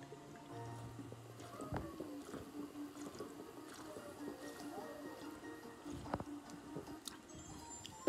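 Faint background music from a television playing in the room, while a woman drinks with a couple of soft gulps, about two and six seconds in.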